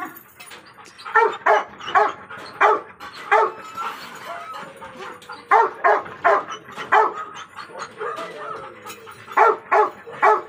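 A dog barking repeatedly: short sharp barks in quick runs of several, with a pause of about two seconds between runs.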